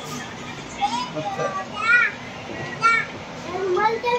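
Voices in a metro train carriage: background chatter, with two short, high-pitched cries about two and three seconds in.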